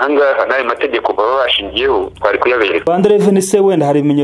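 Speech only: people talking, the voice dropping to a lower pitch about three seconds in.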